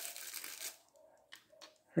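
Rustling of hands handling a small plastic action figure, fading out about two-thirds of a second in, followed by a couple of faint clicks from its plastic head parts.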